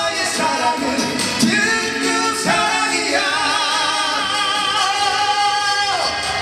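Male vocalists singing a Korean trot song live over band accompaniment, then holding one long note with vibrato from about halfway through.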